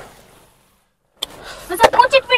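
Voices fade and the sound cuts to dead silence for under a second, as at an edit. The voices then come back, with a sharp knock near the end.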